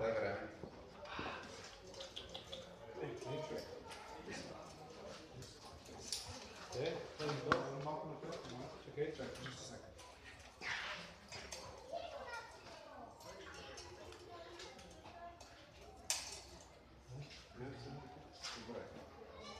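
Faint background chatter of people talking, with no clear words, and a couple of short sharp knocks.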